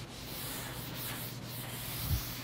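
Felt eraser rubbing across a chalkboard in repeated strokes, over a steady low room hum.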